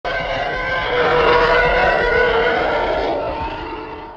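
Channel-intro sound effect: a loud, sustained, wavering growl-like tone with several pitches at once that starts suddenly and fades out over the last second.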